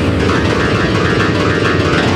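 Black MIDI passage on a synthesized piano: thousands of simultaneous notes, nearly every key at once, blur into a loud, dense cluster of sound with a rapid flutter, no longer separate melody notes.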